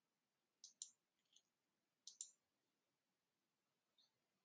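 Faint computer clicks, two quick pairs about a second and a half apart over near silence, as the presentation slides are advanced.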